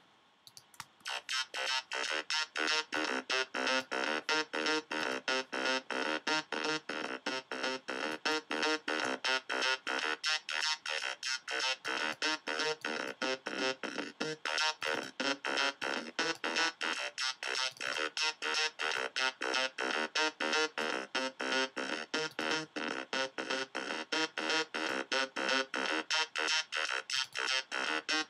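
Waldorf Blofeld synthesizer playing a fast repeating sequence of short notes, about four a second, starting about a second in, with its filter cutoff swept by automation so the tone brightens and darkens.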